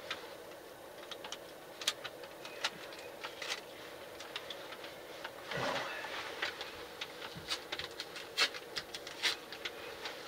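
Scattered, irregular light clicks and knocks of objects being handled and moved, faint, over a low steady hum.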